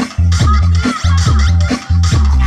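Loud dance music with a heavy bass beat repeating about twice a second.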